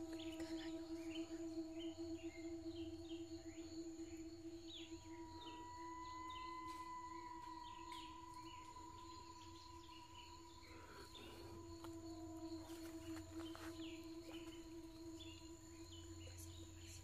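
Faint, eerie drone of several steady held tones, with a higher tone swelling in about five seconds in and fading out around ten seconds. Short scattered chirps sound over it.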